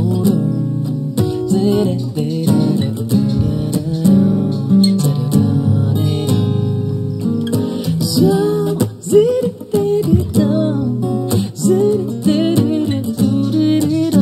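Two acoustic guitars strumming and picking a song's opening, played live, with a man's wordless vocalising over the guitars in the later seconds.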